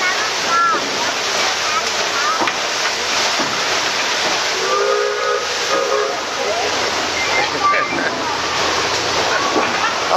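Steady rushing hiss of steam and churning water aboard a steam sternwheel riverboat, with a short chord-like tone about five seconds in and faint voices.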